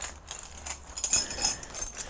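Small metal hand tools (spanners and wrenches) clinking and rattling in a scooter's tool bag as it is handled, with light scattered clicks and a brighter run of chinks about a second in.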